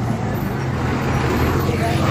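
A bus engine running as the bus approaches, a steady low drone.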